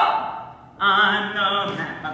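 A voice singing in an operatic style. A short sung phrase fades out at the start, then about a second in a voice holds long, slightly wavering notes.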